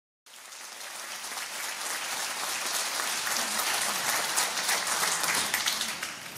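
Audience applauding: the clapping comes in just after the start, grows louder and thins out near the end.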